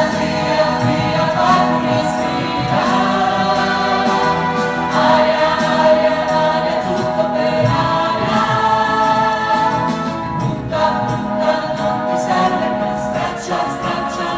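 Musical-theatre chorus singing in unison and harmony over instrumental accompaniment with a steady beat.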